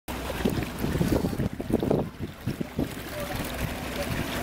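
Wind rumbling on the microphone aboard a small boat moving across open water, in irregular low gusts for the first three seconds and then steadier.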